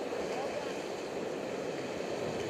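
Rushing whitewater of a river rapid pouring around an inflatable raft: a steady rushing noise, with faint voices over it.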